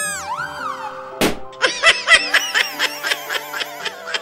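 Children's background music with cartoon sound effects: a rising-and-falling whistle-like glide at the start, a sharp hit just over a second in, then a run of quick, high-pitched squeaky giggles.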